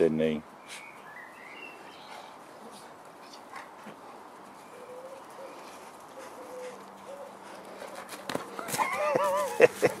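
Boerboel puppies whimpering near the end in a quick run of short rising-and-falling whines. The background is quiet and outdoors, with a few faint bird chirps.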